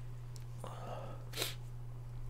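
A steady low electrical hum under a quiet room, with one short, faint breath noise from the man at the microphone a little past halfway.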